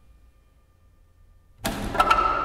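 Live improvised ensemble music. A faint held tone fades out, then about one and a half seconds in a sudden loud percussive crash enters with the ensemble, ringing out in the church's reverberation.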